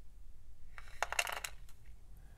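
Small clinks and rattles of metal safety pins and beads jostling in a paperboard box as a beaded dangle is handled and set down, in a short cluster about a second in with a few light ticks after.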